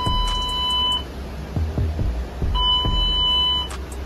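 An electronic buzzer sounding long steady beeps, each about a second long with a pause of about a second and a half between, twice here, over a steady low rumble.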